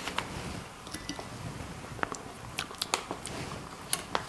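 Soft crinkling of a plastic spice packet being handled, with a few light, scattered clicks.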